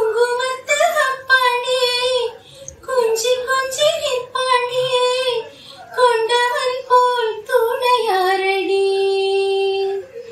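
A woman singing a film-song medley solo, with no accompaniment, in short melodic phrases with brief breaks. Near the end she holds one long steady note.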